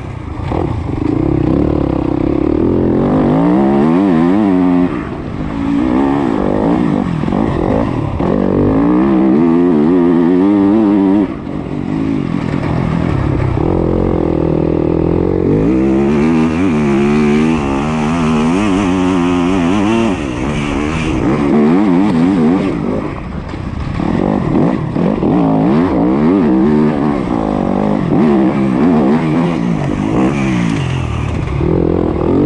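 Yamaha YZ250F four-stroke single-cylinder dirt bike engine revving up and down under way, with the throttle rolled off briefly about five, eleven and twenty-three seconds in. Wind rushes over the head-mounted camera's microphone.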